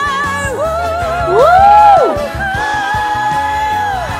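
Female pop singer's solo voice over band accompaniment: a held note, then a sweep up to a loud high note about a second and a half in that falls away, then another long held note.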